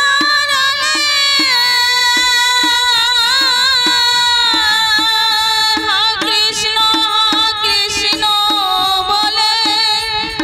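A woman singing a Bengali devotional kirtan to Radha and Krishna into a microphone, with long held notes that waver in pitch. A harmonium accompanies her, with a steady percussion beat underneath.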